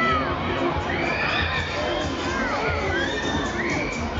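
Riders on a Mondial Shake R4 spinning thrill ride screaming and shouting, several rising-and-falling shrieks one after another, over the ride's loud music.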